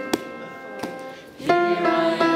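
A small choir singing a worship song, accompanied by strummed guitar chords. The held chord fades through a lull, with a guitar stroke just after the start and another partway through. Voices and instrument come back in strongly about one and a half seconds in.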